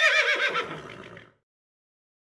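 A horse whinnying: one long whinny with a quavering pitch that falls and fades out a little over a second in.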